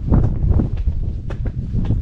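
Wind buffeting the microphone in a loud low rumble, with a few sharp knocks of footsteps on concrete steps.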